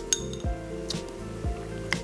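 A metal spoon clinking lightly a few times against a small ceramic bowl while scooping blueberries, over background music with a steady beat.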